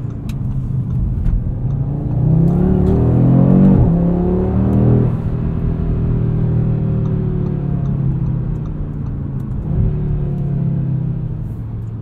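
2022 Audi RS 3's 2.5-litre turbocharged inline-five accelerating hard, heard from inside the cabin: the revs climb from about two seconds in, dip briefly at a quick gearshift near four seconds, climb again, then the driver eases off about five seconds in and the engine settles to a steady lower note.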